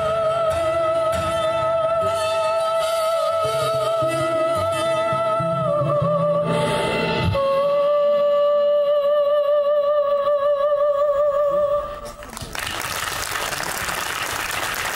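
A woman singing the last long held notes of a song with wide vibrato over instrumental backing. The backing drops away about seven seconds in and she holds a final long note alone, then applause breaks out about twelve seconds in.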